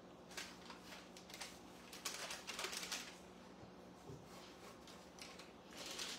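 Faint rustling and scraping of hands and a metal bench cutter handling and scooping floured dumpling dough on a table, in short irregular strokes, with a faint steady hum underneath.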